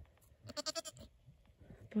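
A goat giving one short, quavering bleat about half a second in.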